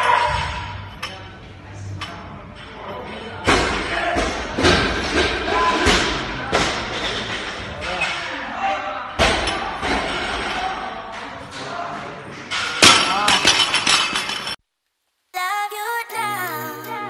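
Weightlifting gym sounds: loaded barbell plates thud and clank several times, with voices in the room. After a short break near the end, music starts.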